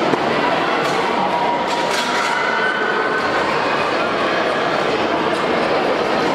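Steady din of many voices chattering, echoing in a large indoor sports hall.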